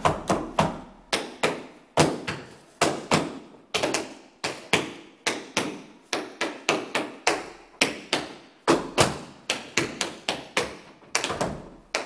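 Hard-soled dance shoes striking a wooden floor in a sequence of percussive dance steps, about three sharp taps a second in an uneven rhythm, at a slow demonstration pace.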